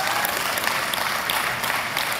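Large crowd applauding: a steady, even clatter of many hands clapping.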